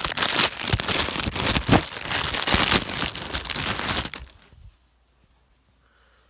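Thin plastic packaging bag crinkling and tearing as it is pulled open by hand right against the microphone, a dense, loud crackle that stops about four seconds in.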